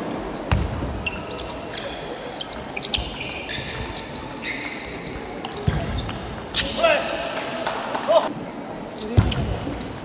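Table tennis rallies: the ball clicks sharply and irregularly off bats and table. A few dull thumps are heard, and a voice shouts for a moment about seven seconds in.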